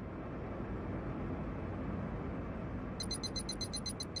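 Produced sound effect under an animated end card: a steady rushing noise, joined about three seconds in by a quick run of high-pitched ticks, about eight a second.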